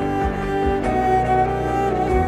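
Cello played with the bow in sustained, held notes, in a live solo performance of a rock arrangement.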